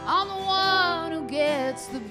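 A woman singing long held notes with vibrato, backed by acoustic guitar, electric guitar and violin. One phrase starts right at the beginning, a shorter one follows, and a new phrase begins near the end.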